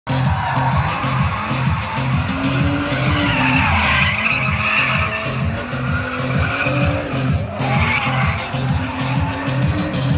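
Drift car's engine revving up and down and its tyres squealing as it slides, the squeal loudest from about three to five seconds in and again near eight seconds. Music with a steady beat plays underneath throughout.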